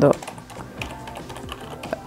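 Computer keyboard typing: a quick run of light keystrokes as a sentence is typed.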